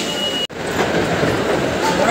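Steady din of a busy, echoing shopping-mall hall, broken by a sudden brief dropout about half a second in.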